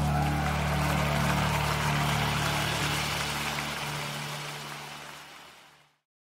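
Worship music ending: a held final chord with sustained low notes and a wash above them fades out steadily to silence near the end.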